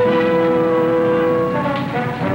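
Orchestral film score: a sustained chord with brass, held for about a second and a half, then moving on to shorter notes.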